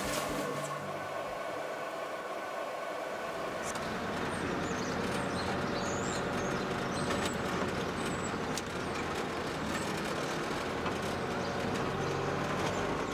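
A vehicle on the move: steady engine and road noise at an even level.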